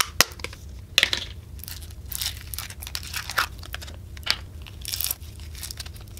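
Clear slime full of small foam beads being squeezed and kneaded by hand: irregular wet crackles, crunches and pops, with a couple of sharp pops in the first second.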